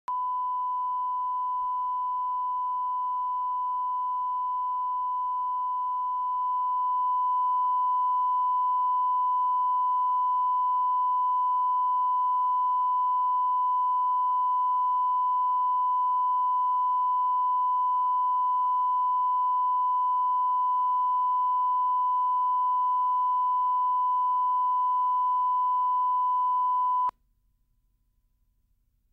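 Steady 1 kHz reference tone, the line-up tone played with colour bars for setting audio levels. It gets slightly louder about six seconds in and cuts off abruptly near the end.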